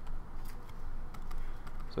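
Stylus tapping and scratching on a pen tablet while digits are written: a scatter of faint light clicks over a low steady hum.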